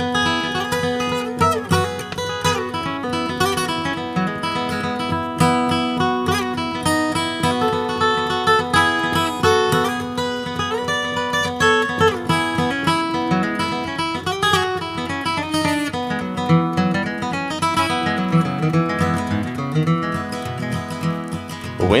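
Solo steel-string acoustic guitar playing an instrumental break in bluegrass style, a picked melody run mixed with strums, with no voice.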